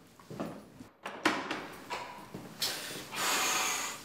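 A door being handled and opened: a sharp click about a second in, then rustling. Near the end comes a longer, louder breathy rush, fitting a startled gasp.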